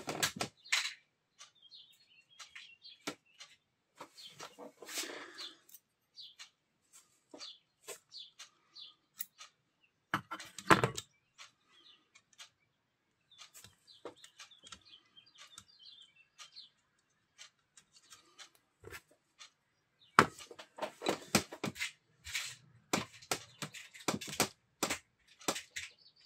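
Small scattered clicks and taps of metal parts being handled as nuts are fitted onto the studs of a disassembled Elmot 12 V alternator's stator and rectifier, with a dense run of clicks about twenty seconds in. Faint bird chirps in the background.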